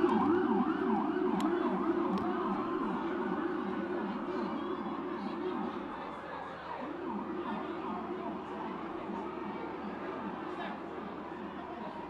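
Police car siren wailing in a fast up-and-down yelp, several sweeps a second. It is loudest as it starts, fades gradually, breaks off briefly about halfway through, then resumes.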